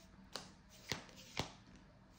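Oracle cards being handled, giving three short, soft clicks about half a second apart.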